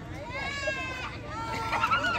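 A high-pitched, drawn-out shriek of about a second, bleat-like and falling slightly, followed near the end by more short excited shouts.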